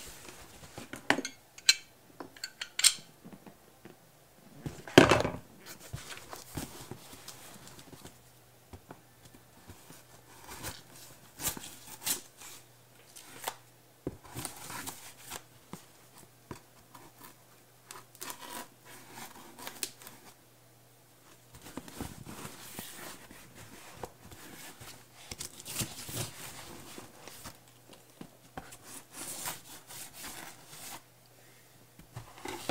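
A knife cutting and scraping along a cardboard box, with the box handled and shifted in between; a sharp knock about five seconds in is the loudest sound.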